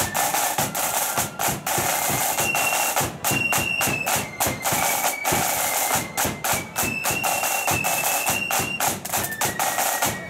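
Marching flute band playing: high flutes carry a tune over massed side drums and a bass drum beating a steady marching rhythm.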